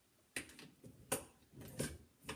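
Three or four light clicks and knocks from working a MEC shotshell reloading press and handling the shell at the crimp stage.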